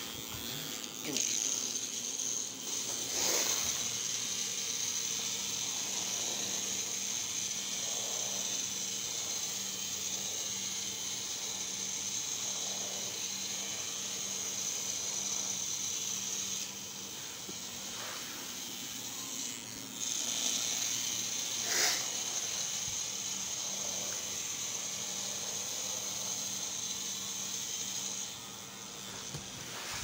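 Small electric motor of a battery-powered toy spider whirring with a steady high whine, running from about a second in for some fifteen seconds, stopping for a few seconds, then running again until near the end. Two sharp knocks stand out over it, one early and one after the restart.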